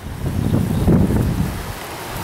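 Wind buffeting the microphone outdoors: an uneven, fairly loud low rumble.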